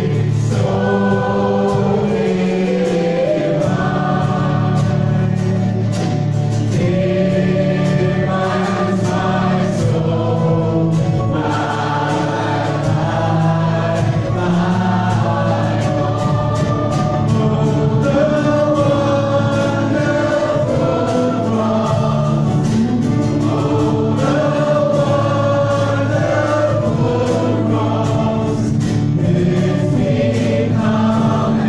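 Live worship band playing a gospel song: male and female voices singing the melody over acoustic and electric guitars and a drum kit, with steady drum and cymbal strikes throughout.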